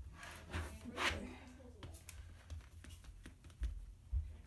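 Apple Polishing Cloth rubbing across a MacBook Air's glass display in short wiping strokes, with scattered scuffs and a few soft bumps as the laptop is handled on the desk.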